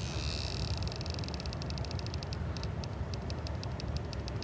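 Insects calling in the roadside grass: a steady high trill gives way about a second in to a run of quick, evenly spaced chirps, which then carry on more sparsely. Under it runs a low steady rumble.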